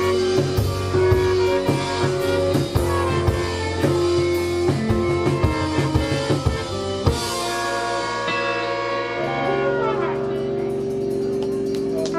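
Live folk-rock band playing: drum kit, electric and acoustic guitars, keyboard and two trumpets blown at once by one player. The drums stop with a final hit about seven seconds in, and a held chord rings on as the song closes.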